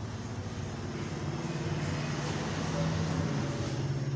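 A steady, low engine-like drone that rises a little in pitch and loudness about three seconds in.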